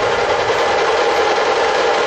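A dhol-tasha drum troupe holding a fast, continuous roll that sounds as a dense, steady rattle. It cuts in suddenly, without the deep dhol beats.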